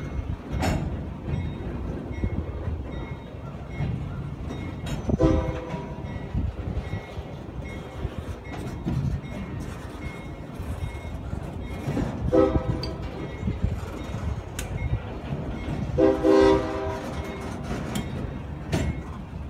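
Empty CSX tie-distribution railcars rolling slowly past with a steady low rumble and scattered clanks. Three short, high-pitched screeches come through about 5, 12 and 16 seconds in, the last the longest.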